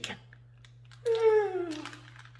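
A woman's long, falling hesitation sound, "uhhh", beginning about halfway through, over light crinkling clicks of a plastic instant-noodle packet being handled.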